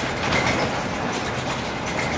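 Cabin noise inside a moving Volvo 7000 city bus: steady engine and road noise with irregular rattles from the body and fittings.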